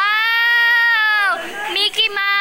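A girl's long, high-pitched squeal of delight held for about a second and a half, rising at the start and dropping away at the end, with another short vocal cry just before the end.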